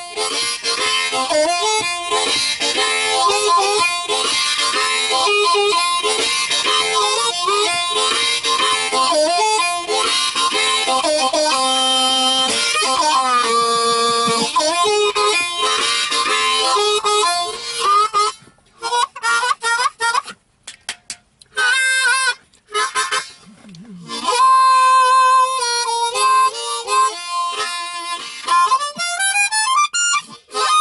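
Diatonic blues harmonica played with cupped hands inside a car: dense, rhythmic playing for most of the first eighteen seconds, then short stabbed notes broken by gaps, then longer held notes near the end.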